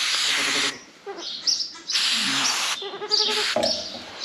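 Aerosol sheep marker spray can hissing in two short bursts, about three-quarters of a second each, as a number is sprayed onto a lamb's fleece. Birds chirp between and after the bursts.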